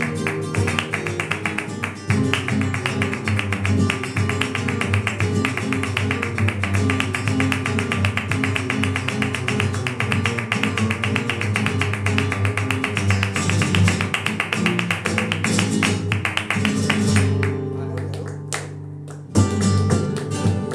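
Two flamenco guitars playing together in a fast, dense flamenco rhythm, with hand clapping (palmas) keeping time. Near the end the playing thins and softens for a couple of seconds, then comes back in strongly.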